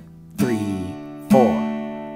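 Steel-string acoustic guitar chords played with single pick downstrokes: two strums about a second apart, each left to ring and fade.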